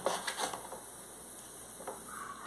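A knife and hands working raw chicken on a plastic cutting board, trimming off fat: a few light taps in the first half second and another near the end.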